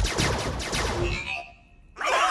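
Cartoon sound effect of the dice breaking up into pixel space-invader sprites: a dense crackling burst over low thuds that fades out within about a second and a half.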